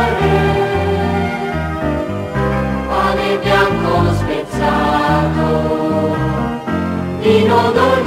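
Liturgical Easter hymn music: a choir singing over instrumental accompaniment with a low bass line, the chords changing every second or so. The sound dips briefly about halfway through and comes back in strongly near the end.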